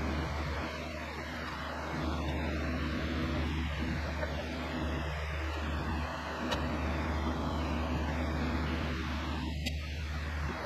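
A steady low mechanical hum, like a running fan or motor, that shifts slightly in level a couple of times.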